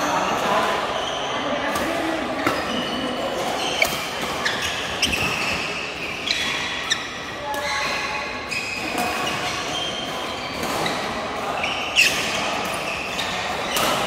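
Badminton rackets hitting shuttlecocks: sharp cracks every second or two at irregular intervals, the loudest near the end, echoing in a large hall over a steady background of players' voices.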